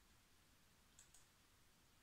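Near silence: room tone, with two faint quick clicks close together about a second in.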